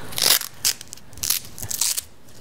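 A few short rustling, scraping noises as a lens-motor cable is handled at the wireless lens-control receiver's connectors. The loudest comes just after the start, with smaller ones in the middle and a quick cluster near the end.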